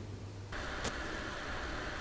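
A steady low hum with a faint hiss in the pause between lines. The hiss grows slightly louder about a quarter of the way in, and there is a single faint click just before the middle.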